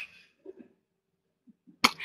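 A pause with faint mouth or breath sounds from the presenter at her microphone, then one brief sharp sound just before the end.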